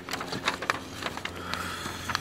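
Handling noise from a camera being moved close around an engine: scattered light clicks and rustles over a faint steady hum.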